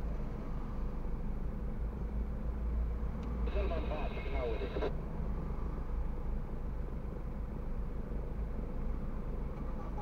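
Low, steady rumble of a car idling in stationary traffic, heard from inside the cabin, with a brief stretch of a voice about three and a half seconds in.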